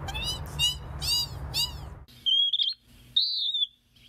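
Western wood-pewee calls: a quick series of short high chirps, then about two seconds in, clear high whistled notes, one slurring downward.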